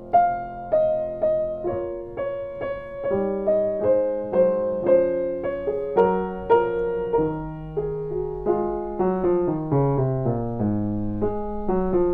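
Restored c.1892 Bechstein Model III 240 cm grand piano being played: a melody of struck notes in the tenor and treble, about two a second, each ringing on under the next, over a lower line that steps down toward the end. The tenor sings beautifully.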